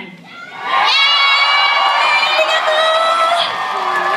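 Concert audience cheering in many high-pitched voices. The cheer swells up about a second in, holds loud for a couple of seconds, then eases off near the end.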